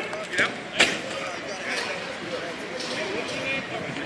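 Outdoor football practice: voices and shouts of players and coaches across the field, with three sharp smacks in the first second, the last the loudest.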